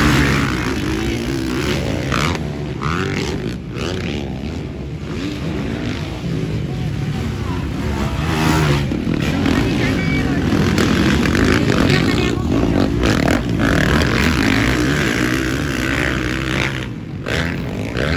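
Several motocross dirt bike engines revving on the track, their pitch rising and falling as riders work the throttle.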